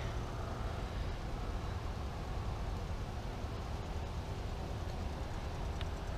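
Steady low background rumble of outdoor ambience with no clear pitch, and one faint click near the end.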